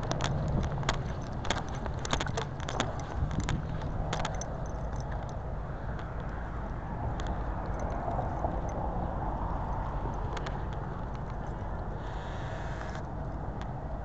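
Crackling and rustling of leaves and twigs handled close to a body-worn camera, with many sharp clicks in the first few seconds, over a steady low rumble.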